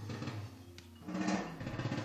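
Jazz playing through a pair of vintage JBL 4311 three-way studio monitor loudspeakers, heard in the room: a steady bass line with pitched notes above it and two louder percussive swells, one at the start and one about a second in.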